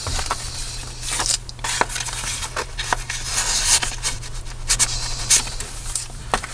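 Paper and heavy cardstock of a handmade journal rustling, scraping and crackling under the fingers as pages are handled and a journaling card is moved in its pocket, with irregular small clicks and taps.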